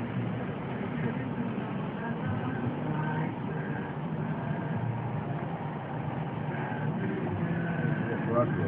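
Steady engine and road noise heard from inside a car driving slowly.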